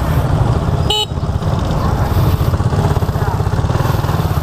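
Small motorcycle engine running at low speed in stop-and-go traffic, a steady low throbbing putter. About a second in, a vehicle horn gives one short beep.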